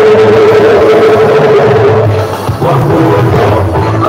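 Church choir singing through microphones with instrumental accompaniment; one note is held for about two seconds, there is a brief break, and the singing picks up again.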